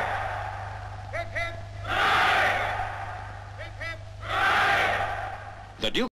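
A company of Grenadier Guardsmen giving three cheers for the Queen. The tail of one massed 'hurrah' is followed by two more rounds, each opened by two short 'hip, hip' calls and answered by a long shout from the ranks lasting about a second.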